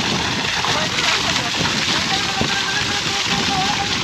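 Heavy stream of water gushing from a water pump's outlet pipe, splashing steadily onto a child and into the pooled water below.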